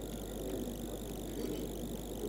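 Steady low background hum with faint hiss and no distinct event.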